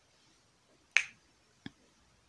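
Two sharp clicks, the first about a second in and louder, the second smaller about two-thirds of a second later.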